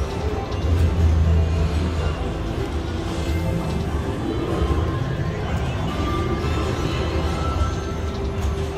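Ultimate Screaming Links slot machine playing its bonus-win celebration music while the win amount counts up on the Congratulations screen.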